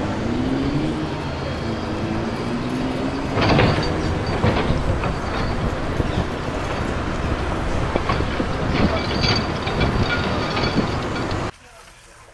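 Asphalt-paving machinery running loudly: the asphalt truck and roller engines, with rakes and shovels scraping and knocking on fresh asphalt several times. The noise cuts off suddenly near the end.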